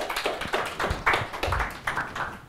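Small audience applauding: many quick, irregular hand claps.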